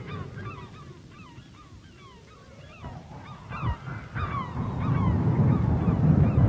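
A flock of birds calling, many short calls overlapping one another, with a low rumble swelling in over the last second or two.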